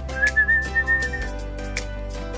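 A high whistle held for about a second, slightly wavering, over background music with a steady beat.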